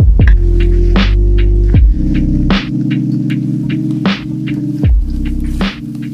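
Background music: an instrumental electronic track with a sustained low synth drone and a slow, steady beat of drum hits.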